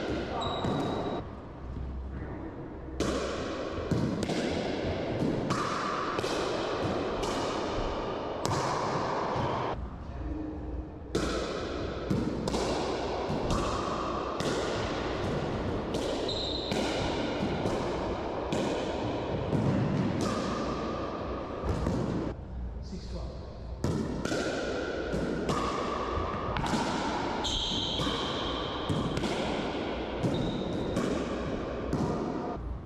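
Pickleball rally in an enclosed racquetball court: paddles striking the plastic ball and the ball bouncing off floor and walls, a sharp hit about once or twice a second, each one ringing with echo off the court walls.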